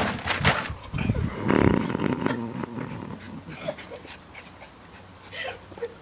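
A Jack Russell terrier growling as it leaps and snaps at a hand, with a sharp knock and rustling as it jumps. The loud part lasts about two and a half seconds, then only a few faint short sounds follow.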